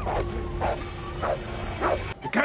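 Film soundtrack: an electric power drill running at a steady pitch, with short whimpering cries coming about every half second.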